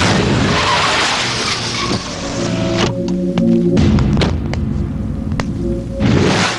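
A car skidding to a stop on dirt, a loud rush of tyre and grit noise lasting about three seconds. Film background music with held notes then takes over, with a few sharp knocks.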